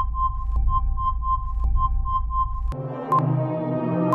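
Quiz-game sound effects over electronic background music: a run of short high electronic beeps, about four a second, as the countdown timer runs out and the answer is revealed. Near the end it cuts to different ambient music with a single tick each second as a new countdown starts.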